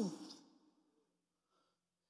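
The last spoken word trails off, then near silence with only a faint breath in the pause.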